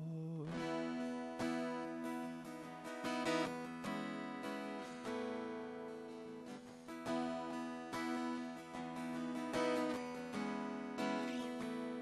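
Solo acoustic guitar strumming and picking sustained chords in a hymn accompaniment, with no voice.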